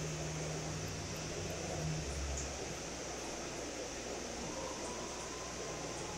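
Steady room tone: an even hiss with a low mechanical hum, like a fan or ventilation running.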